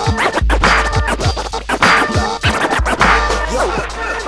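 Hip hop beat with a DJ scratching a record on a turntable: repeated quick scratches sweeping up and down in pitch over a steady deep bass beat.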